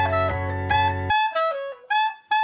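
Playback of a clarinet lead melody over a sustained low chord. The chord cuts off about a second in and the lead carries on alone, stepping down in pitch.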